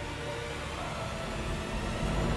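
Title-sequence sound effect and music sting: a steady rumbling whoosh with heavy bass and a few held tones, one of them rising slightly about halfway.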